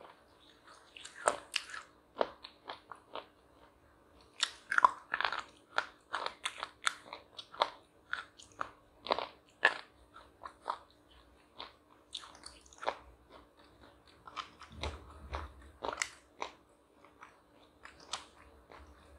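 A person biting and chewing a crisp layered wafer bar close to the microphone: irregular sharp crunches, several a second in bursts, with pauses between bites.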